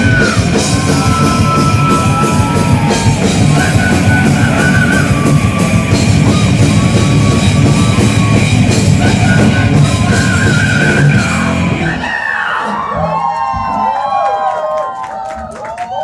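Heavy metal band playing live, with distorted electric guitars, bass and pounding drums. The full band cuts off about three quarters of the way through, leaving scattered yells and a few loose sounds.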